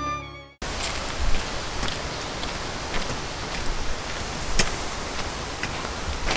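Violin background music fades out within the first half second. It is followed by steady outdoor ambient noise with scattered sharp ticks and taps.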